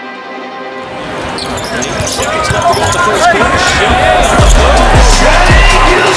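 Background music with basketball game audio fading in under it: arena crowd noise builds over the first few seconds. From about four seconds in, a basketball is dribbled on the hardwood court, thumping about twice a second.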